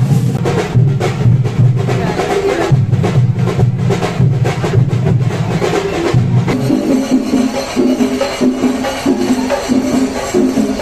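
Sinkari melam: chenda drums beaten fast with sticks, a dense run of sharp strokes over a heavy low drum sound. About two-thirds of the way through the sound changes abruptly to a different, lighter percussion beat with even pulses.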